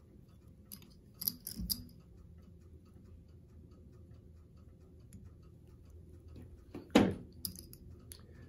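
Faint small clicks and fiddly handling noise as fine lead-free wire is twisted off at the rear of a fly-tying hook and its wraps are pushed along the shank, with a faint regular ticking underneath.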